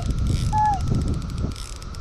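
Mitchell 300 spinning reel's drag clicking in a fast, even run as a hooked grass carp pulls line off the spool, over a low rumble. A short falling note sounds about halfway through.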